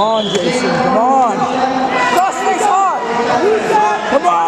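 Onlookers shouting short calls of encouragement, about five separate shouts that rise and fall in pitch, over steady crowd noise. A brief sharp knock comes about two seconds in.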